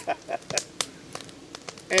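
A man laughing quietly in short breathy bursts that thin out after about a second.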